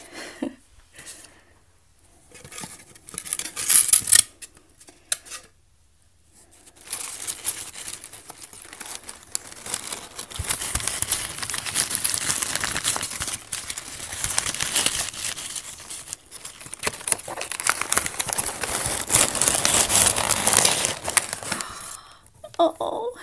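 Crumpled newspaper packing crinkling and rustling as hands dig through it inside a foam-lined shipping box. A few short bursts of handling noise in the first seconds, then almost continuous crinkling from about seven seconds in.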